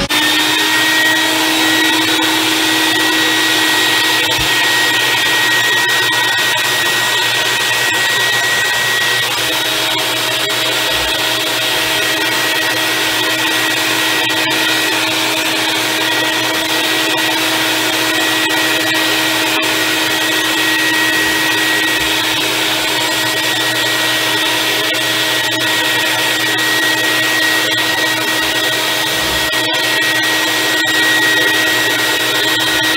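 Vacuum cleaner running steadily as its hose nozzle sucks hair clippings off a sink: an even rush of air with a constant high whine.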